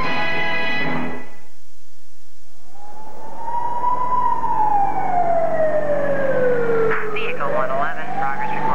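Held notes of orchestral music end about a second in. Then an ambulance siren wails: a slow rise, a long fall and a rise again, with quicker warbling tones joining near the end.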